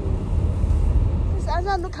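Low, steady rumble of a car's engine and tyres heard inside the cabin while driving. A woman starts speaking near the end.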